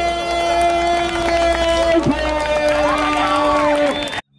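A voice holding two long, even shouted notes of about two seconds each, the second a little lower, each ending with a drop in pitch. Another voice rises and falls near the end, over crowd noise.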